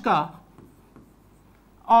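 Faint scratching of a marker pen writing a word on a whiteboard.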